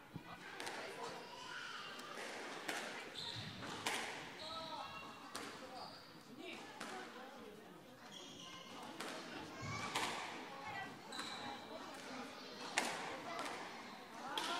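Squash balls struck by rackets and hitting the court walls and floor, a sharp hit every half second to second, echoing in a large hall.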